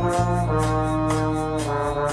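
An orchestra of brass, woodwinds and strings playing a hymn arrangement: brass-led held chords over a steady low bass, the chord moving on about half a second in and again near the end.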